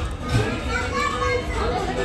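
Indistinct voices with children's voices among them, and a brief sharp knock about a third of a second in.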